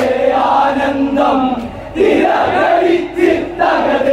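A group of men singing a Malayalam folk song about the Ramayana together in loud unison chorus, with a brief lull about two seconds in.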